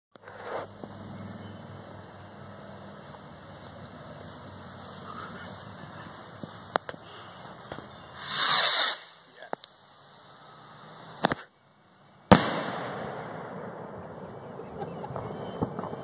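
A large firecracker set off in a dirt pile: a loud hiss lasting about a second, then a few seconds later two sharp bangs about a second apart, the second the loudest, followed by a long rolling echo that fades over several seconds.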